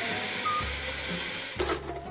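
An electric countertop blender runs with a steady whirr and cuts off about one and a half seconds in. A brief burst of noise follows near the end.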